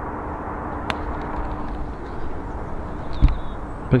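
A single sharp click of an eight iron striking a golf ball about a second in, over steady outdoor background noise, with a dull low thump just after three seconds in.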